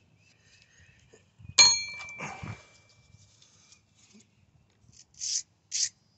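A wire brush scrubbing a metal file in short scratchy strokes, about two a second near the end, to clear metal burrs clogged in the file's teeth. About one and a half seconds in there is a sharp metallic ding that rings briefly.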